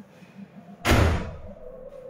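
A single loud thump or slam about a second in, sharp at the start and dying away over about half a second, over faint background sound from the TV broadcast.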